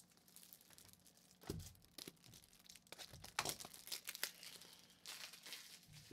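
Faint crinkling and crackling of plastic card sleeves and wrappers being handled, in scattered irregular crackles, with a soft knock about one and a half seconds in.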